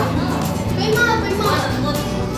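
Children talking and playing nearby, with background music underneath.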